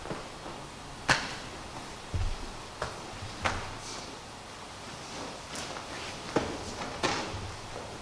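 Two grapplers working on a padded mat: scuffs and rustle of gi cloth, a string of sharp slaps of hands and bodies on the mat and on each other, and a low thud about two seconds in as a body goes down onto the mat.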